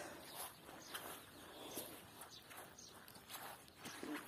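Faint footsteps on gravel, a few irregular steps.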